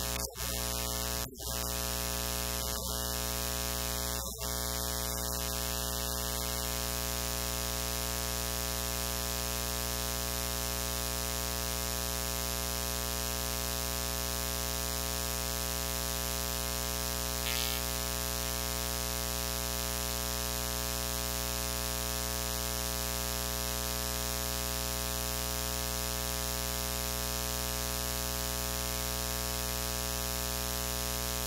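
Steady electrical mains hum and buzz with a constant static hiss, loud enough to cover everything else, as from a fault in the sound system. There are a few short dropouts in the first few seconds and a brief burst of noise a little past halfway.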